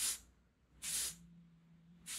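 Aerosol spray-paint can giving short, quick hisses: two bursts about a second apart.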